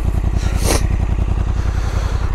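Honda NT1100's 1084 cc parallel-twin engine idling steadily on the stationary bike, a fast, even run of exhaust pulses. A short falling sound cuts across it about two-thirds of the way in.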